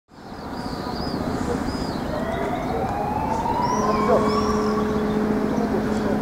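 A siren-like wail rising slowly in pitch over steady outdoor background noise, with short high chirps above it. A steady low hum joins about two-thirds of the way in.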